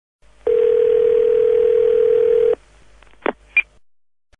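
Telephone ringing tone heard down the line: one steady ring lasting about two seconds, then two short clicks as the call is picked up by an answering machine.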